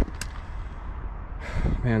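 Low, steady outdoor background noise with one sharp click just after the start. A man's voice comes in near the end.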